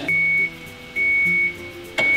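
Electronic beeps at one steady high pitch, about half a second on and half a second off, repeating about once a second, over quiet background music.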